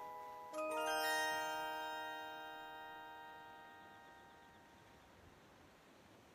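Music box playing the final chord of a melody: several notes struck in quick succession about half a second in, then ringing out and fading away to near silence.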